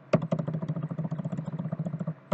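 Computer keyboard keys tapped in a quick run, about ten clicks a second, as text is deleted character by character.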